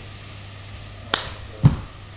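Two short knocks about half a second apart, the first a sharp click and the second a louder, duller thump, over a steady low hum.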